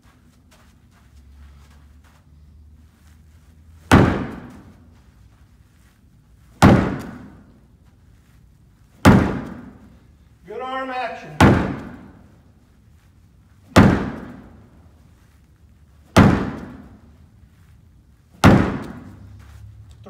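Ball thrown hard against a plywood board, seven sharp slams about two and a half seconds apart from about four seconds in, each ringing out briefly in the room.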